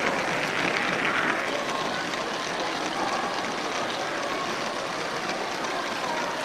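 Steady rolling rattle of a Lego train's wheels and motor on plastic track, heard from on board, with the murmur of a crowded hall behind it.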